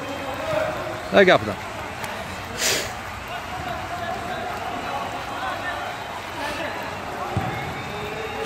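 Background sound of an amateur football match: distant players' voices, with a soft thud near the end.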